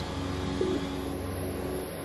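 Boeing MQ-25 Stingray's turbofan engine running at low power as the drone taxis: a steady rushing noise with a low hum.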